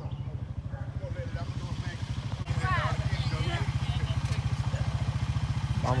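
A four-wheeler's engine idling with a steady low, even putter. It becomes louder about halfway through, and voices sound over it.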